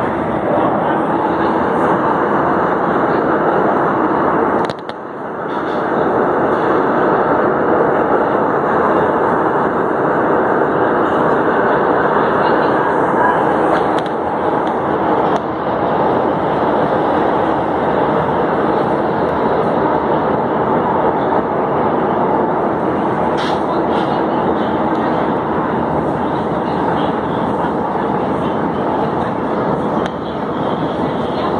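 Metro train running through a tunnel, heard from inside the car: a loud, steady rush of wheels on rails, with a brief drop in loudness about five seconds in.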